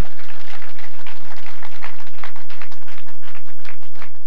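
Audience applauding, a loud, dense patter of many hands clapping just after a sung song ends.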